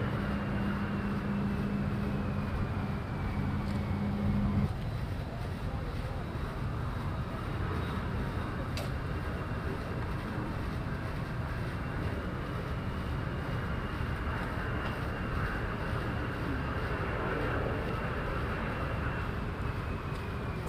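Jet engine noise of an F-22 Raptor's twin Pratt & Whitney F119 turbofans: a steady rumble with a faint high whine. A low steady hum underneath stops about four and a half seconds in.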